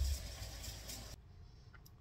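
Faint kitchen room noise, an even hiss, that cuts off abruptly just over a second in at an edit, leaving near silence.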